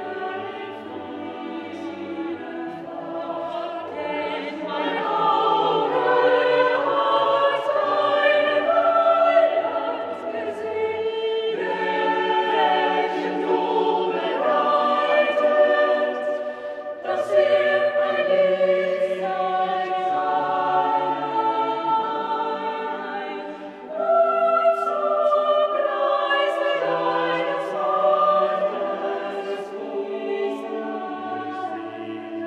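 A small mixed-voice vocal ensemble singing classical choral music in held chords. The phrases are broken by short pauses about 11, 17 and 24 seconds in.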